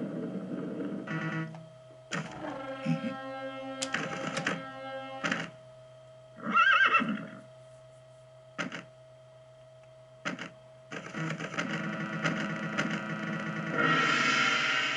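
Hokuto no Ken pachislot machine playing its cutscene sound effects: music fades out, then a series of sharp knocks and a short horse whinny about halfway through, which is the loudest moment. Music builds again near the end.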